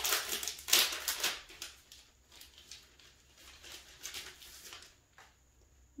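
Paper and card rustling and sliding as printed card sleeves and inserts are handled. The rustling is loudest in the first second and a half, with softer rustles again around four seconds in.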